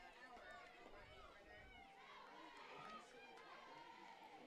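Near silence, with faint distant voices and chatter from the players on the field.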